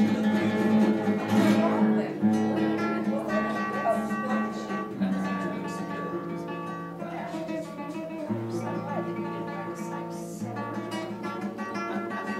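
Solo acoustic guitar playing a slow piece of held notes and chords that change every second or two.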